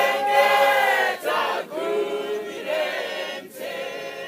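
Mixed choir of men and women singing a Shona hymn without instruments, in phrases of held chords with short breaks between them, softer in the last second.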